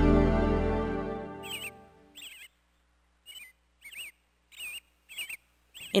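A sustained keyboard chord fades out over the first second and a half. Then comes a series of about seven short, squeaky animal chirps, roughly one every two-thirds of a second.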